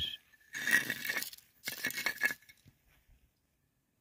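Handling of a rusted metal kettle fragment on a rock: two short scraping clinks as it is picked up, the second ending about two and a half seconds in.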